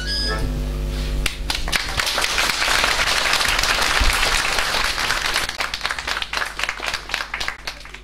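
A button accordion holds its final chord for about a second, then the audience applauds. The clapping is dense at first and thins out over the last couple of seconds.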